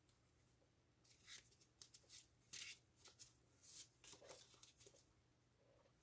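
Faint rustling and soft ticks of a deck of playing cards being handled and cut in the hands: a scattered run of small, short card sounds that begins about a second in and dies away near the end.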